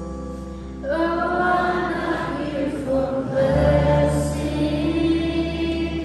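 Live worship band music with guitars, bass guitar and drums. Several voices come in singing together about a second in, and the music gets louder; heavier bass notes join from about halfway.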